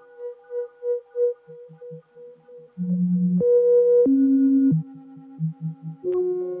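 Modular synthesizer music: a run of short pulsing notes, then, from about three seconds in, a louder stretch of held tones that step up and then down in pitch, followed by quieter low pulses.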